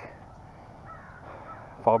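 A bird calling faintly a couple of times about a second in, over light outdoor background noise.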